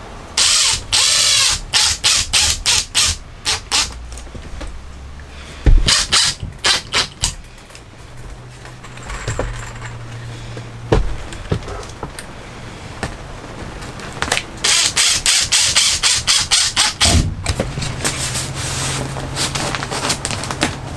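Ryobi cordless impact driver driving screws into cedar ceiling boards in five short bursts of rapid hammering clatter over a motor whine. A couple of sharp knocks on wood come between bursts.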